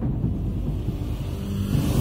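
Low, steady rumbling sound effect of a TV channel's animated logo intro.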